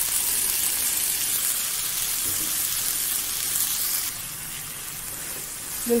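Tomato paste sizzling as it hits hot oil and frying onion paste in a nonstick pan, a steady hiss that drops off about four seconds in.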